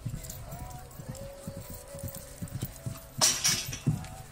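A pony's hooves cantering on grass: a quick run of dull thuds. Near the end comes a loud, brief rushing noise.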